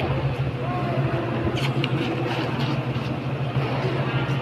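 A steady low hum fills the sports hall, with faint voices and a quick cluster of sharp taps a little over a second and a half in.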